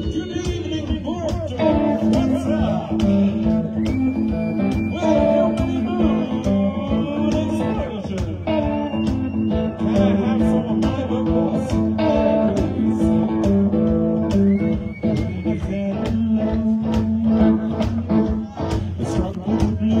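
Live rockabilly band playing: electric guitars over upright double bass and drums keeping a steady beat, with some gliding, bent notes.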